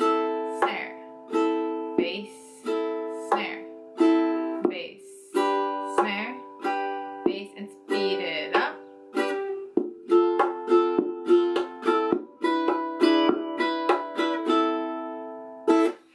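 Enya Nova ukulele played percussively: a thumb hit on the bridge and saddle for a bass-drum sound and a thumb hit on the top for a snare sound, each followed by a four-finger down strum, in a steady repeating rhythm. It starts on an A minor chord and moves to G about halfway through, with the strums coming closer together.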